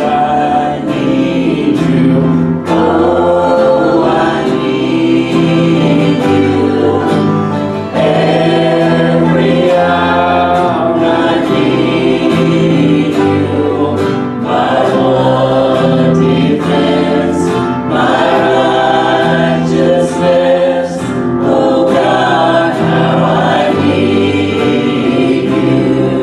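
Church worship team singing a slow worship song in several voices, with band accompaniment.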